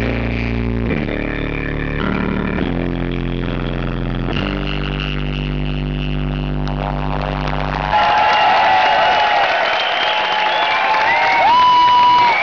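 Live rock band playing heavy, sustained bass-laden chords that change every second or two, distorted by an overloaded camera microphone. About eight seconds in the low chords stop and loud crowd cheering and whistling take over.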